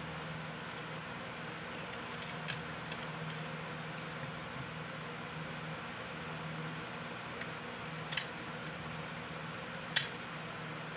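A few sharp plastic clicks and rattles from handling a PSP's UMD disc and drive door, the loudest near the end, over a steady background hiss and low hum.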